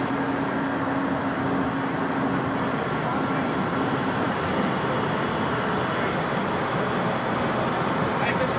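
Inside a 2006 IC CE school bus at highway speed, its International DT466 diesel engine and the road noise make a steady drone. A steady tone sits over it for the first few seconds and then fades.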